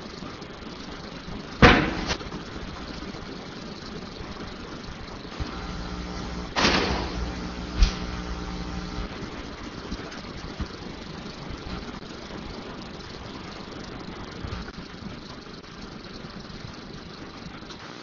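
Steady hiss of room noise picked up by the meeting-room microphone, broken by a few knocks: a sharp one about two seconds in, the loudest, and another about seven seconds in followed by a smaller click.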